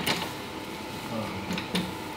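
A few small clicks and knocks of metal as the window crank handle is worked off the Early Bronco door's regulator shaft: one sharp click at the start and another knock near the end.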